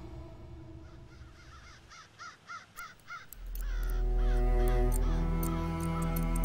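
A bird gives a quick series of about six short calls. About three seconds in, music enters with a deep low note and held tones, and sharp clicks sound over it.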